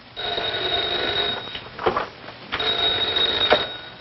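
Telephone bell ringing twice, each ring a bit over a second long with a short pause between, an incoming call about to be answered.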